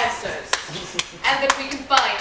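Four sharp hand claps, about half a second apart, with voices between them.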